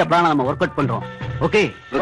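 A man speaking film dialogue in an animated, up-and-down voice over background film music.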